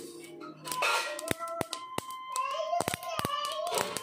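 Flax seeds popping and crackling as they dry-roast in a hot pan: a dozen or so sharp, scattered pops, the sign that the seeds are roasting through.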